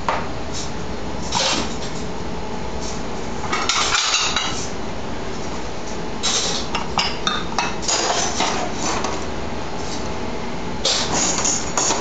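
Cups, saucers and spoons clinking and clattering in bursts on a café counter, over a steady hum.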